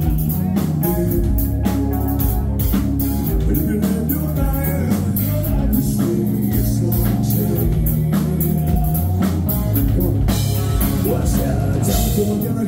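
Live rock band playing loud through a PA: electric guitars, bass and drum kit, with a sung lead vocal.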